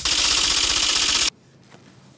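Rapid clattering sound effect, like a fast typewriter, accompanying the on-screen caption text appearing. It runs for about a second and a quarter, then stops abruptly into quiet.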